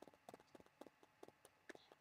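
Near silence between spoken phrases, with a few faint, irregular clicks.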